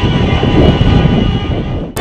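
Many car horns sounding together in one steady, held blare over a low traffic rumble. It cuts off abruptly near the end.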